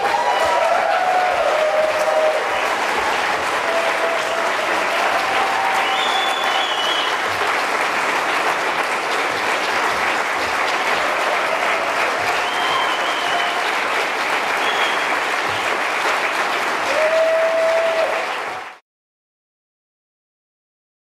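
Audience applauding steadily for about eighteen and a half seconds, then cut off abruptly.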